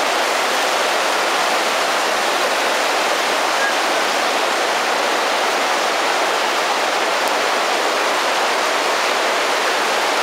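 The shallow North Fork of the Virgin River rushing over a cobble bed in the slot canyon, a steady, even hiss of flowing water.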